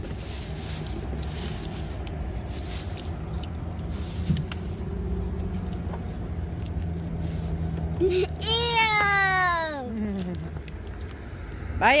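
Steady low hum of a running car engine, and about eight seconds in a baby's single long whining cry that falls in pitch.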